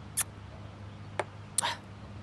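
A man drinking from a small glass: a sharp sip about a quarter second in, a faint click about a second in, and a short breathy exhale near the end, over a steady low hum.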